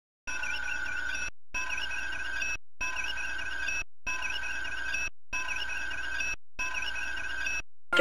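Electronic starship-bridge beeping sound effect: a warbling, chirping computer tone about a second long, repeated six times in a row with short gaps between.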